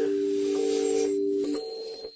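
5Star channel ident sting: a held chord of a few steady notes with an airy shimmer above it. It thins out in the last half second, leaving a faint high tone.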